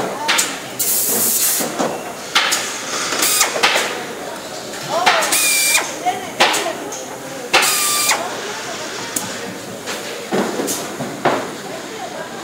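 Pneumatic air tools on a pinball assembly line: several short bursts of compressed-air hiss, two of them with a steady whine from the tool, over background factory chatter.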